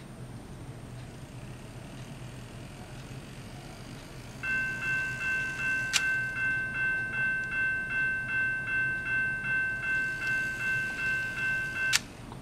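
Kato N-scale automatic crossing gate's sound unit playing its default US-style crossing bell: an electronic ding repeating steadily about two and a half times a second. It starts about four seconds in, when the locomotive trips the sensor and the gates come down. A single sharp click sounds about six seconds in.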